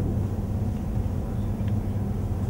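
Steady low hum of room background noise, with a faint click near the end.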